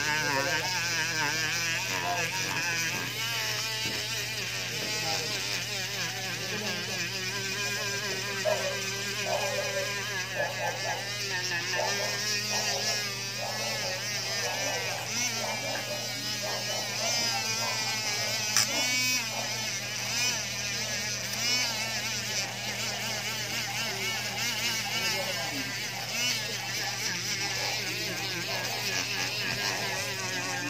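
Small handheld rotary tool spinning a felt buffing wheel against a carbon fiber cover, a steady electric motor buzz.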